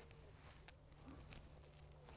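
Near silence: faint outdoor background with a low steady hum and a few very faint ticks.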